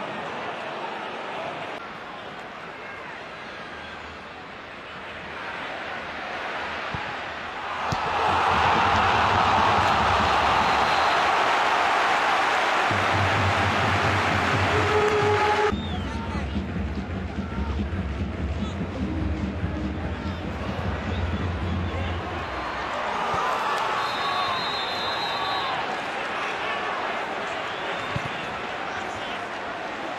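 Football stadium crowd noise. It swells into a loud cheer a few seconds in, breaks off suddenly about halfway through, then carries on as quieter crowd murmur.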